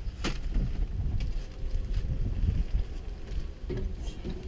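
A single sharp click about a quarter second in, then irregular low rumbling wind noise on the microphone.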